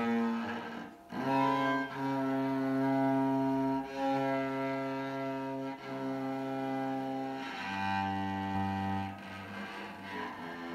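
Cello played by a beginner working by ear: a slow tune of long bowed notes, each held about one and a half to two seconds, with a short break about a second in and softer playing near the end.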